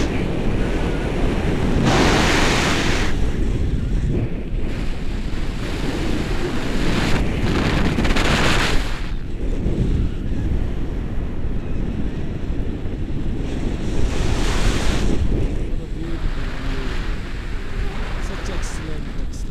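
Wind rushing over the microphone of a camera on a tandem paraglider in flight, a loud steady rumble that rises in three stronger gusts.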